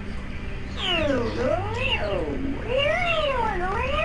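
A person's voice, pitch-shifted by the Clownfish voice changer, making wordless cat-like sounds that slide down and up in pitch about once a second.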